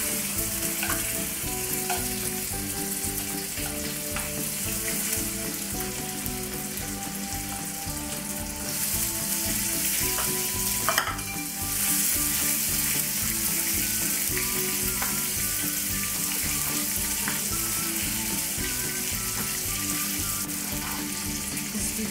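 Butter melting into bubbling caramelized sugar in a frying pan, sizzling steadily, with a spoon stirring through it. Quiet background music plays underneath.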